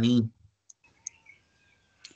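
The end of a man's spoken word, then two short, faint clicks about a third of a second apart over a quiet call-audio background.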